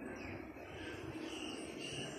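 Faint outdoor ambience with insects chirping in short repeated high notes over a low background hiss.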